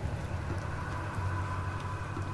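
Background ambience bed under a horror narration: a steady low drone with faint held higher tones and a soft hiss.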